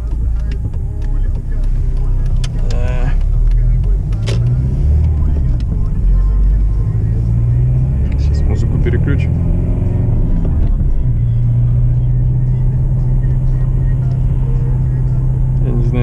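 Car engine and road noise heard inside the cabin as the car pulls away and drives, the engine note rising a couple of times before settling into a steady drone for the last few seconds.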